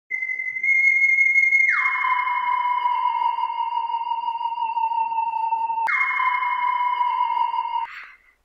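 Steady electronic tones: a high held tone joined by a second tone that slides down about an octave and holds beneath it. A sharp click cuts in near six seconds, then both tones carry on and stop just before the end.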